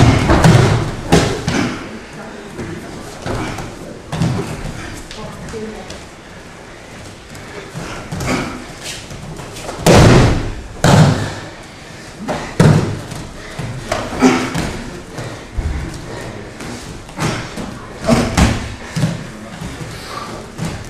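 Bodies thrown onto padded training mats, each landing with a heavy thud and slap: a loud one right at the start, two more close together about halfway through, and several lighter ones later.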